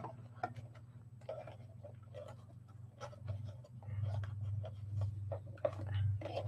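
Satin shimmer ribbon and a paper gift box rustling and scratching faintly as fingers tighten a tied bow, with scattered small clicks that grow busier in the second half, over a low steady hum.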